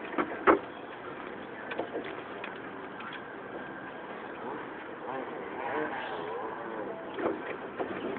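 Jeep rolling slowly down a rough, muddy dirt trail, heard from inside the cab: a steady running noise with a few short knocks and rattles in the first few seconds.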